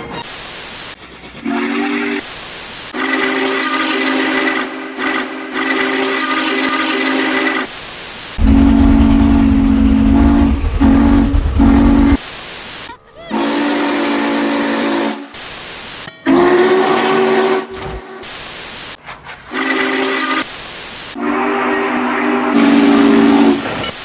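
Steam locomotive chime whistle, Norfolk & Western #611's, sounding about seven blasts of a few seconds each; the one near the middle is lower and louder. Short bursts of static hiss come between the blasts.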